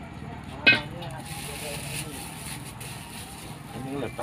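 A metal ladle strikes a steel wok once with a sharp clank about a second in. Under it runs a steady low hum, with a faint hiss from the hot wok after the strike.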